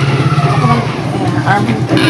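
A steady low motor hum, like an engine running, with a man's speech over it.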